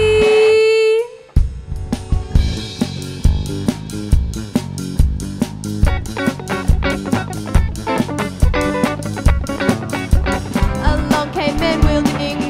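Rock band music: a held sung note ends about a second in, followed by a short break, then drums and guitar play a steady beat, with singing coming back in near the end.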